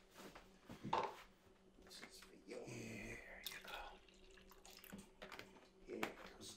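Liquid poured into a small plastic cup for a little over a second, midway, with a short knock about a second before it.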